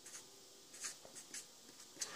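Faint scratching of a marker pen writing on a sheet of paper, a few short strokes.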